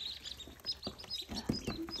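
A brood of ducklings peeping, many short high peeps overlapping, with a few soft knocks near the middle.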